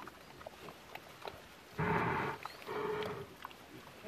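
A pig grunting twice close by, two harsh noisy grunts about halfway through, the second with a steadier pitch.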